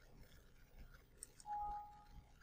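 A computer alert beep: one steady electronic tone about half a second long, coming just after a faint mouse click, as the software rejects an out-of-range voltage entry.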